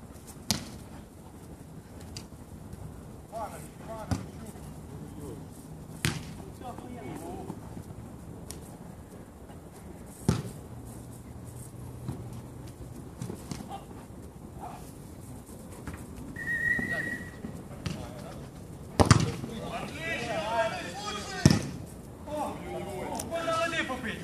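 A football being kicked on an artificial-turf pitch: a sharp thud every few seconds, the loudest two near the end, with players shouting to each other between kicks.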